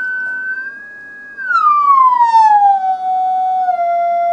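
Test tone from an audio tone generator played through a loudspeaker after passing through two GK IIIb speech scramblers in series. A steady high tone about a second and a half in glides smoothly down to a lower steady pitch as the generator is turned down. With both scramblers on, the pitch inversion cancels and the output follows the input: the original tone is restored, showing the descrambling works.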